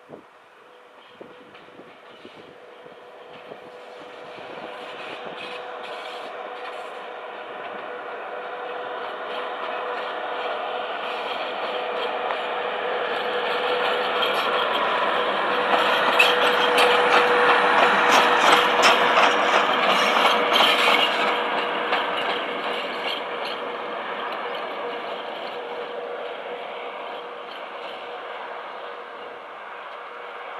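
A PKP Class ET22 electric locomotive running light passes close by: a steady humming tone over the rumble of its running gear swells as it approaches, peaks about halfway through with a run of sharp clicks from its wheels over the rail joints, then fades as it moves away.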